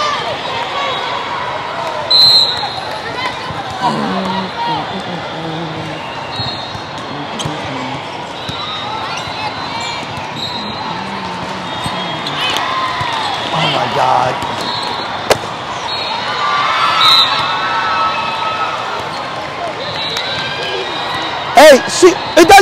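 Indoor volleyball rally: sharp ball hits, one standing out about 15 s in, and short sneaker squeaks on the sport court, with players calling out over the hubbub of a large echoing hall. Loud shouts break out near the end as the point is won.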